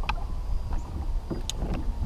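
Low, uneven rumble of wind and water around a bass boat, with a few sharp clicks, the strongest about a second and a half in, and a faint thin steady whine underneath.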